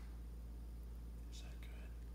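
A steady low hum, with a brief faint whisper-like sound about one and a half seconds in.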